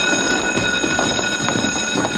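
Electric school bell ringing steadily, a loud metallic ring with a buzzing rattle underneath, sounding the change of classes.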